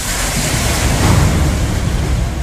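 A loud, steady rushing noise, spread evenly from low to high pitches, with no tone in it.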